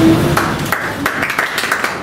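A small group of people clapping by hand: scattered, uneven claps that start about half a second in and keep going.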